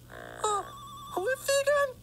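A short buzz, then a brief trilling electronic ring like a telephone's. About a second in, a cartoon character's voice makes a wordless sound with a sliding pitch.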